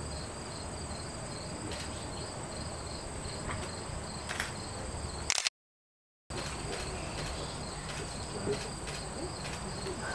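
Crickets chirring steadily: a pulsing high trill under a higher steady tone, over a low background rumble. The sound cuts out completely for under a second about halfway through, then resumes.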